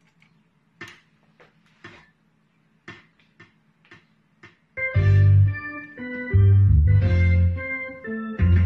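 A few faint clicks, then about five seconds in a rock shuffle backing track starts loudly, with organ-like keyboard chords over low held bass notes.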